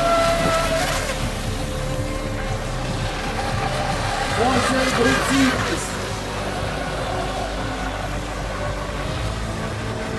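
Brushless electric RC race boats running flat out on the water, with a steady motor whine throughout. A person's voice is heard briefly about halfway through.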